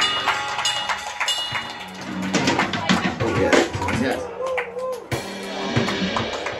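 A live acoustic guitar and drum kit band playing, with cymbal and drum strikes throughout. A man sings from about two seconds in, holding a wavering note near the end.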